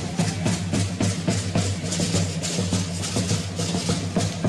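Danza music: a drum beating a steady, fast rhythm, with the dancers' rattles and sharp wooden clicks over it.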